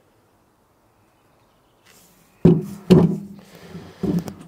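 Stainless steel melting-furnace body knocking down onto a wooden table: two knocks about half a second apart, two and a half seconds in, with a brief ringing after them.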